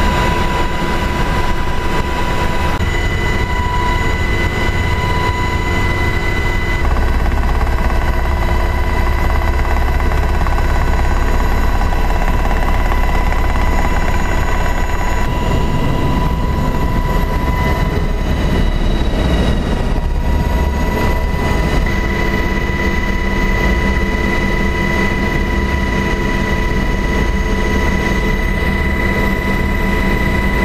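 Sikorsky Seahawk helicopter's twin turboshaft engines and rotor running, loud and steady: high whining tones over a low rumble. The balance of whine and rumble shifts a few times, about 7, 15 and 22 seconds in.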